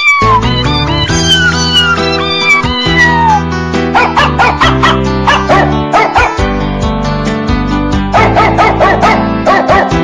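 A ringtone's music track with a dog's barking mixed in, in quick clusters of short yaps from about four seconds in and again near the end, over steady chords and a beat. Falling high-pitched glides sound in the first few seconds.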